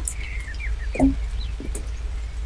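Small birds chirping with short rising and falling calls, over a steady low rumble of wind on the microphone. A brief low sound stands out about a second in.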